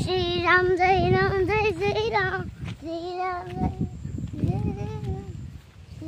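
A young child singing in a high voice, holding long wavering notes in three phrases, the first the longest, with short breaks between them.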